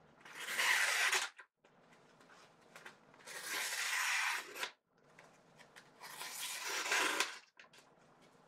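Blade of a Chinese copy of the Shirogorov Neon folding knife slicing through a sheet of paper in three long strokes, each a rasping hiss of about a second. This is a test of the knife's factory edge.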